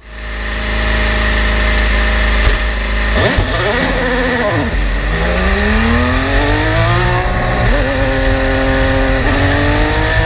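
IndyCar's Honda 2.2-litre twin-turbo V6 heard from the cockpit, running with a steady low rumble. About three seconds in it is blipped up and down a couple of times, then it pulls away with its pitch rising through the gears, dropping sharply at each upshift (around seven seconds in, again shortly after, and near the end).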